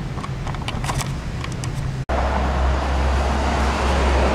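Outdoor background noise with a few faint clicks, then, after an abrupt cut about halfway through, a louder steady low rumble.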